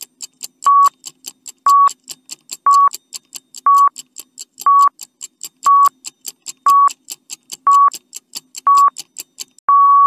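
Countdown-timer sound effect: a short beep once a second with quick ticking in between, ending in one longer beep near the end.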